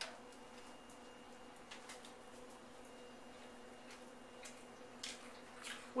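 Faint room tone: a steady low electrical hum, with a few soft faint clicks scattered through it.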